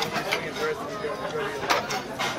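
Restaurant chatter: voices murmuring at the table and around the room, with a short sharp click near the end.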